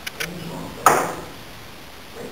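A single sharp knock about a second in, with a short ringing tail, after a few faint clicks at the very start.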